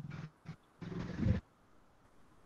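Brief low, muffled voice sounds, the loudest lasting about half a second around the middle, then near silence.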